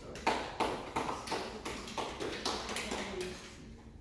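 A few people clapping briefly, irregular sharp claps about three a second, loudest just after the start and tapering off near the end.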